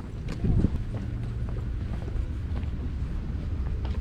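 Footsteps on a paved path, a few faint steps over a steady low rumble of wind on the microphone, with one louder thump about half a second in.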